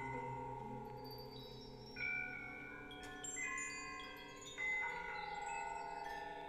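Soft chimes ringing: a few separate bell-like notes struck about two, three and four and a half seconds in, each ringing on, over a faint low steady tone.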